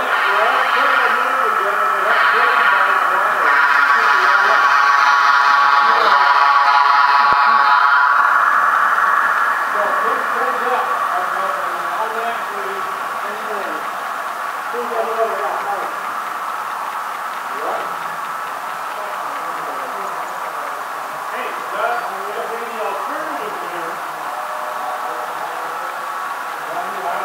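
A model locomotive's onboard sound speaker gives a steady pitched sound, loudest for the first eight seconds or so as the train passes close by, then fading away. Voices carry on in the background.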